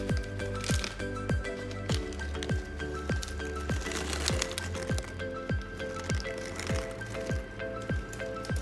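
Background music with a steady beat: a deep drum that drops in pitch on each hit, about two a second, over held notes.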